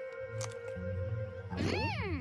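Cartoon background music: a held note over low bass notes. About a second and a half in, a cartoon pony's high, closed-mouth vocal sound glides up and then down, made with her mouth full of apple.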